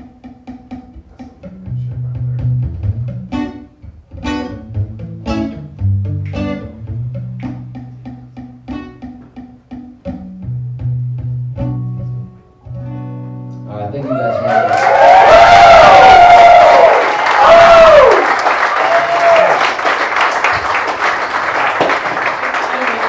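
Acoustic guitar played solo, picked notes over a bass line, with the song closing on a final chord about thirteen seconds in. Then the audience cheers and whistles over applause, louder than the playing.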